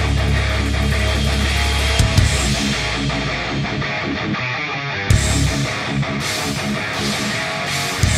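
Heavy rock music with distorted electric guitar, bass and drums. The low end thins out for about a second past the middle and comes back in with a hit.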